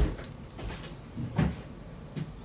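A sharp click right at the start, then a few light knocks and a duller, louder knock about a second and a half in.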